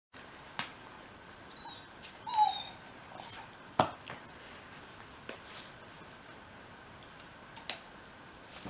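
A dog gives one brief high whine about two and a half seconds in, falling slightly in pitch. A few sharp clicks and knocks come between, the loudest just before halfway.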